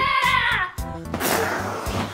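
A child's excited shout of "Yeah!" with falling pitch, over background music with a steady low line. Then a rushing noise for about the last second.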